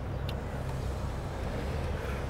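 A vehicle idling: a steady low rumble under faint street noise.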